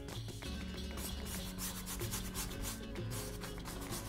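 Stiff bristle paintbrush scrubbing paint onto canvas and palette in repeated, irregular scratchy strokes, with soft background music underneath.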